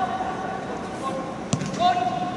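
Players' voices shouting and calling on the pitch, with one sharp thud of a football being kicked about one and a half seconds in.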